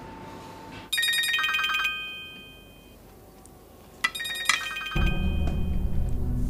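Mobile phone ringtone: a short melodic phrase of stepped electronic notes, heard about a second in and again about four seconds in, after a faint steady tone. Background music comes in near the end.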